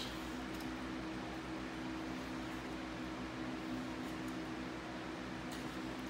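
A steady machine hum with a constant hiss, like a fan or motor running, and no distinct strokes or knocks.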